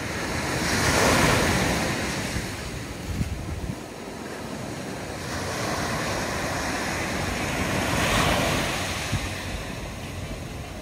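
Sea waves breaking on a coarse-sand shore and washing up the beach, with two louder swells of surf, one about a second in and one near the end.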